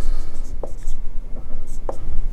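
Marker writing on a whiteboard: faint scratchy strokes with a couple of short ticks as the pen meets the board, about two-thirds of a second in and near the end, over a steady low room hum.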